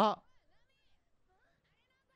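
Speech only: a man's loud, rising "What?" cuts off just after the start, followed by faint anime character voices playing quietly underneath.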